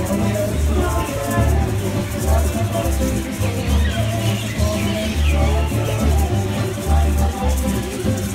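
Live Hawaiian music: plucked guitar and upright bass with a singing voice, joined by the shaking of a hula dancer's feathered gourd rattles ('uli'uli). The bass notes pulse steadily under the song.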